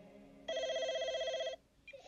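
Telephone ringing once: a rapid, trilling electronic ring lasting about a second, starting about half a second in and cutting off suddenly.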